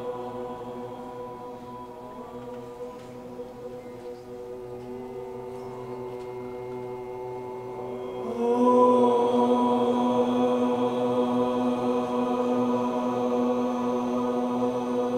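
Group chanting of a mantra, long notes held at a steady pitch by many voices. About eight and a half seconds in, a man's voice chanting through the microphone comes in louder at a slightly higher pitch and holds the note.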